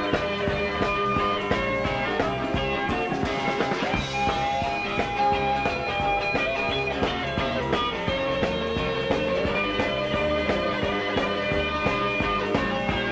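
Instrumental break in a rock and roll band recording: electric guitar playing over a steady drum beat and bass, with no singing.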